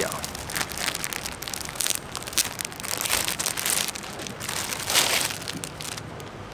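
A clear plastic packet crinkling and rustling as a folded cloth string bag is worked out of it by hand: irregular crackles throughout, loudest about five seconds in.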